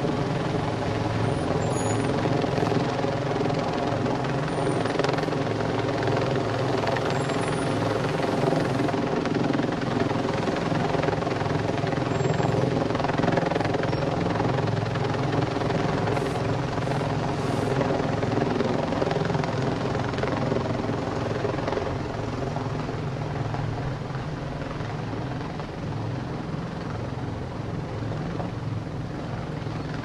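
A loud, steady mechanical drone at a fixed pitch, like a running engine or rotor, easing slightly in level over the last several seconds.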